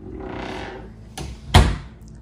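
A pantry door being shut: a short swish, a small click, then a loud thud about a second and a half in as it closes.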